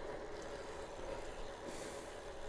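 Steady, fairly quiet rolling noise of a road bike on wet tarmac, mostly tyre hiss, with a brief burst of sharper hiss near the end.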